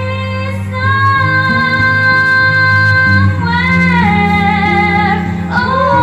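A girl singing karaoke into a microphone over a backing track with guitar, holding long, steady notes and stepping between pitches.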